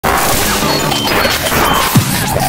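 Intro sting of music layered with crashing sound effects, ending in a deep falling boom.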